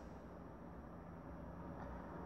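Faint room tone: a low, even hiss with a faint steady hum.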